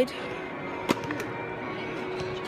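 Music playing over a stadium's public-address system, with one sharp knock about a second in.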